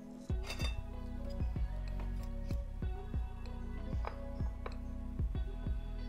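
Background music with steady held notes and a repeating plucked bass line, and a light clink about half a second in.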